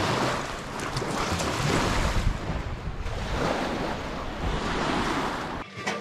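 Small lake waves lapping and breaking on a sandy shore, with wind on the microphone. The wash swells and fades, then cuts off shortly before the end.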